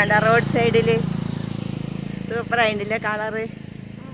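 A person's voice speaking in two short stretches over the low hum of a motor vehicle's engine, which fades out about halfway through. A faint steady high-pitched tone runs underneath.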